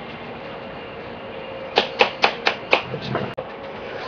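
A quick run of five sharp taps, about four a second, starting near the middle, followed by a single sharper click near the end.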